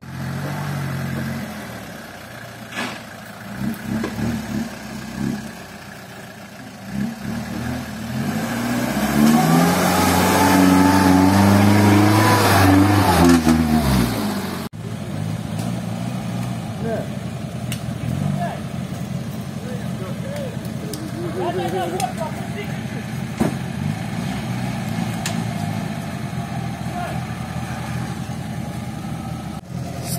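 UAZ 4x4 engine revving hard in the mud, its pitch climbing and then falling back over several seconds. Later a steady lower engine note as a UAZ runs near the pit.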